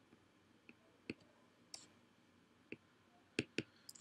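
Faint, scattered clicks of a stylus tip tapping on a tablet's glass screen during handwriting, about six in all, two in quick succession near the end.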